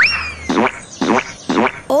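Cartoon sound effects: a quick rising whistle-like glide that slowly sags, then four short, steeply falling boing-like tones about half a second apart.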